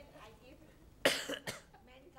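A person coughs about a second in, two short coughs close together, with faint talk around them.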